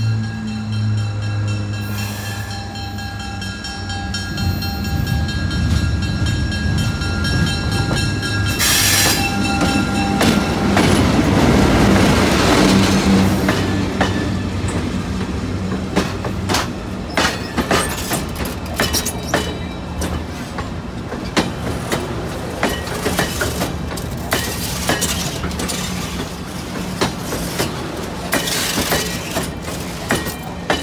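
Diesel passenger locomotive approaching and passing slowly with a steady engine drone, loudest about twelve seconds in. Then stainless-steel passenger cars roll by, their wheels clacking over the rail joints.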